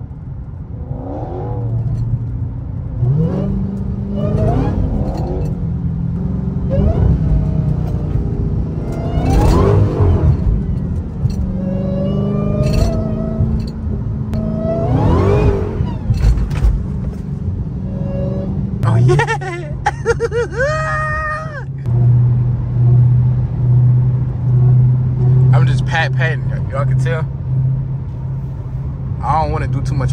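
Dodge Hellcat's supercharged 6.2-litre HEMI V8 heard from the cabin, revving up hard several times in rising-then-falling surges, then settling into a steady drone. Traction control is off on a wet road, where each press of the gas breaks the rear tyres loose.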